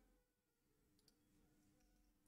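Near silence, with a few very faint computer keyboard clicks as code is typed.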